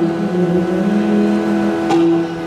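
Sustained reedy drone of a harmonium or shruti box in a Yakshagana ensemble, holding steady notes whose lowest pitch steps down and back up, with a single sharp tap near the end.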